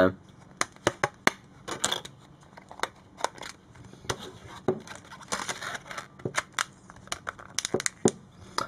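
Plastic back cover and battery of a Samsung Galaxy S II T989 phone being handled to take the battery out. There are many sharp, irregular clicks and snaps, with a few short scratchy rubs of fingers on plastic.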